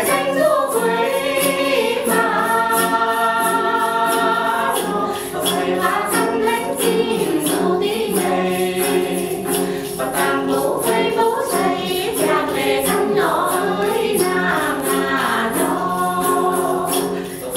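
Tày women singing in several voices, accompanied by plucked đàn tính long-necked lutes, with a steady pulse of about three light strokes a second.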